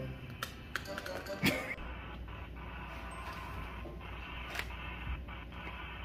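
A few sharp clicks and taps of small hard-shelled candies on a stone countertop, the loudest about a second and a half in, over a steady low hum.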